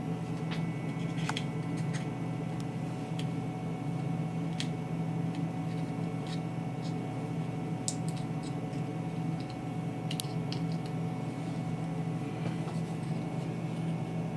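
A steady low hum, with faint scattered clicks and rustles from fingers handling and peeling back the cut, leathery shell of a ball python egg.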